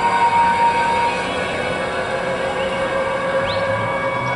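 Marching band wind instruments holding long, sustained chords, the notes shifting about a second in, over a steady crowd background. A brief rising squeal near the end.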